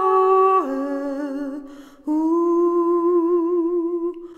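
A solo voice sings a slow wordless melody in long held notes. The first note steps down and fades out. After a short breath, a new long note is held steady with a gentle vibrato.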